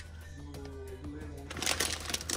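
Soft background music with steady held notes. Near the end, wrappers crinkle as a hand rummages through a plastic basket of wrapped snack bars.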